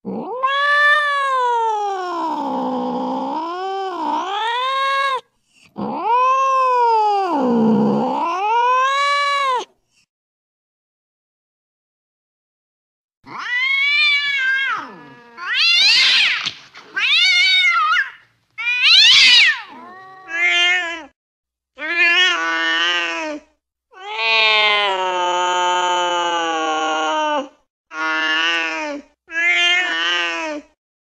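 Cats fighting, caterwauling: two long, wavering yowls that dip low in pitch and rise again, then after a few seconds of silence a run of about ten shorter yowls and screeches, some sweeping sharply up or down.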